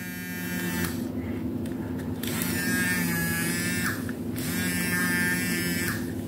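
Battery face massager's small electric motor buzzing, running off 5 V USB power in place of its two batteries, which makes it run faster. A higher whine above the steady buzz drops out about a second in and again near two-thirds of the way, then returns each time.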